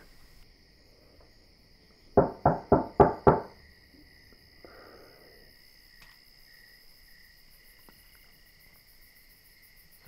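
Crickets chirping steadily in the background. About two seconds in, a short laugh of about five quick pulses.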